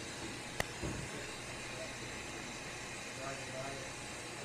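Steady machinery hum and hiss from dry-cleaning equipment, with one sharp click just after half a second in and a soft knock about a second in.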